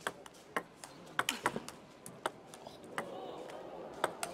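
Table tennis ball in a fast rally: a string of sharp clicks as the ball hits the rackets and the table, several a second at uneven spacing.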